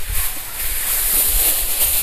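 Wind blowing across the microphone: a steady hiss over an uneven low rumble of buffeting.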